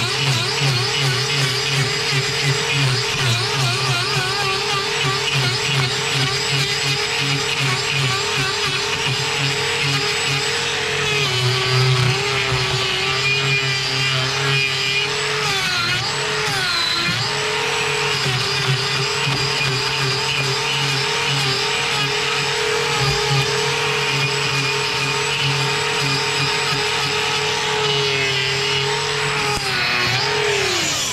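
Handheld angle grinder with a hoof-trimming disc running continuously while it cuts horn from a cow's overgrown claw. Its steady whine wavers as the disc is pressed into the hoof, and sags more deeply a little over a third of the way in and again just past halfway.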